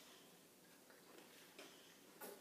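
Near silence: room tone with a few faint light clicks of plastic spoons against plastic dessert pots, one slightly louder near the end.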